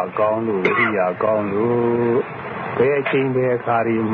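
A man speaking, in continuous phrases with short pauses.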